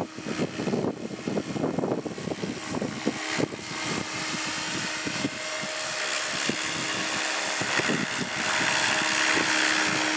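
Electric SAB Goblin 500 RC helicopter flying in close: a steady hum of its rotors with a thin high whine from its electric motor, growing louder toward the end. Gusts of wind on the microphone are heard in the first few seconds.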